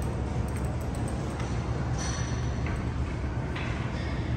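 Steady low hum of room noise in a large gym, with a few faint ticks and clinks.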